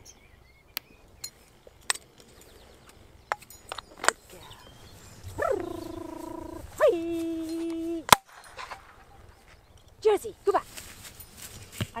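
A gundog dummy launcher firing once with a single sharp crack, sending a canvas dummy out for the dogs to retrieve. Before it come a few light clicks and two long, steady pitched notes.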